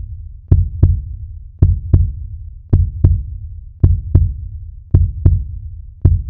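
Heartbeat sound effect: slow, evenly spaced double thumps, a lub-dub pair about once a second, over a low hum.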